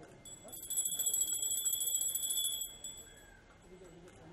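Puja hand bell rung rapidly with quick clapper strikes. The bright ringing lasts about two and a half seconds, then stops abruptly with a short ring-out.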